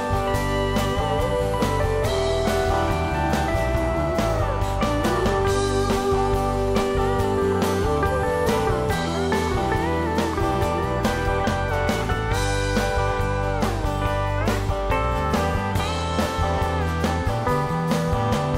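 Instrumental break of a psychedelic rock song: a pedal steel guitar glides between long held notes over guitar, bass and a steady drum beat.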